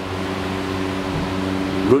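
Steady machine hum with a constant hiss behind it; a man's voice starts right at the end.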